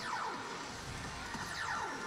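Electronic music and sound effects from a Revolutionary Machine Valvrave pachislot machine during an on-screen countdown, with several falling pitch sweeps over a steady background.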